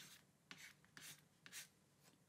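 Faint pen scratches: a few short strokes as a line is drawn under a handwritten total, about half a second, one second and a second and a half in.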